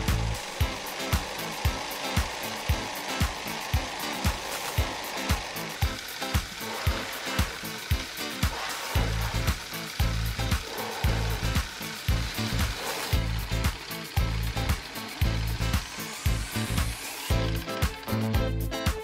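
Ugears Pneumatic Engine, a wooden mechanical model, running on air from a balloon: rhythmic wooden clacking of its piston and valve with a steady hiss of escaping air, which stops shortly before the end as the balloon empties. Background music plays underneath.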